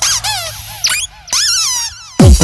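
Rubber squeaky toy squeezed by hand, giving a quick string of high squeaks that each rise and fall in pitch, with a short break just past the middle.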